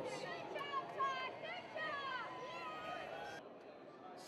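Indistinct voices of several people talking over the general noise of a large hall, cutting off abruptly near the end.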